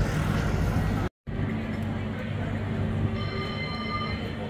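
Electric street tram approaching on its rails, a steady low hum joined near the end by a cluster of high, steady whining tones.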